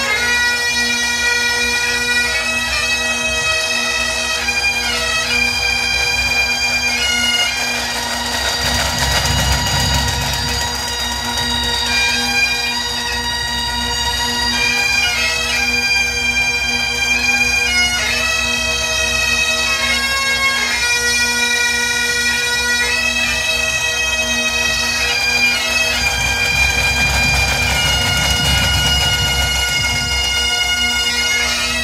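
Bagpipes of a small pipe band playing a tune over their steady drone, the melody stepping between held notes throughout.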